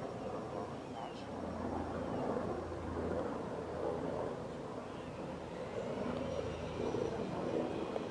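A steady low engine drone that swells and fades slightly.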